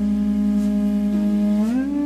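Jazz/world-fusion instrumental music: a long held melody note that slides up in pitch near the end, over a sustained low bass note.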